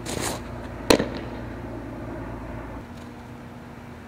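A pitched softball, a curveball from a windmill delivery, smacks into the catcher's mitt with one sharp pop about a second in, after a short brushing noise of the pitching motion at the start.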